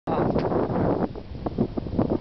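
Wind buffeting the microphone, heavy for about the first second and then dropping to a lighter, patchier rumble.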